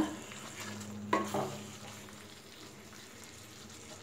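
Thick chicken curry masala sizzling faintly in a kadai as it fries, with one short spatula scrape against the pan about a second in.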